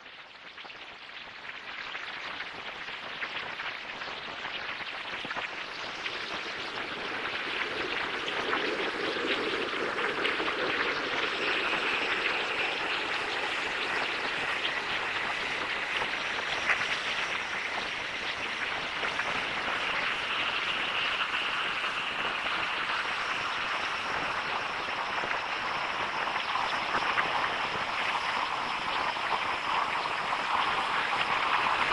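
Musique concrète: a dense, even noise texture that fades in over the first several seconds and then holds steady, with faint held tones drifting in and out above it later on.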